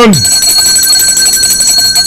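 A loud, steady, high-pitched electronic ringing tone, like an alarm, held for about two seconds and then cutting off suddenly.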